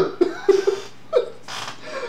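A man laughing in a few short bursts, then a breathy exhale.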